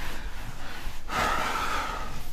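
A cloth duster rubbing across a whiteboard, erasing marker: a soft swishing rub that grows louder about halfway through.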